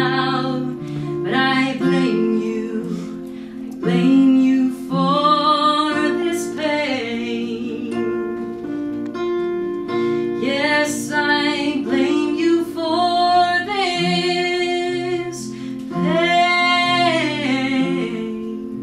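A woman singing with her own acoustic guitar accompaniment, in phrases with long held notes over steady guitar chords.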